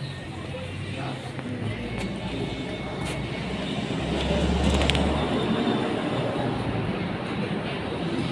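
Steady background noise of passing traffic with indistinct voices, and a louder low rumble of a vehicle about halfway through.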